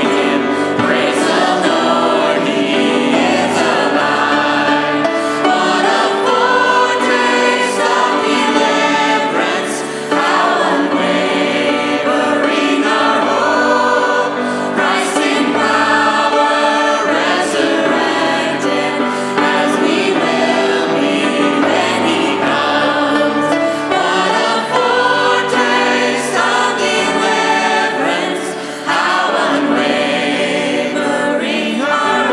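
A group of women's and men's voices singing a hymn to grand piano accompaniment.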